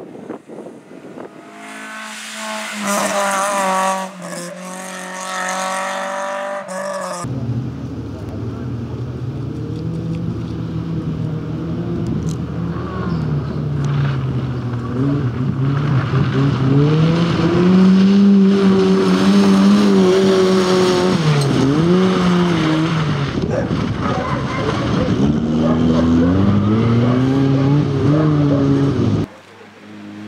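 Rally cars driving flat out on a stage. First a high-revving engine climbs in pitch through the revs and is cut off abruptly about seven seconds in. Then a Fiat 126p's small engine runs hard for about twenty seconds, its pitch rising and dropping again and again through gear changes and lifts, until it stops suddenly near the end.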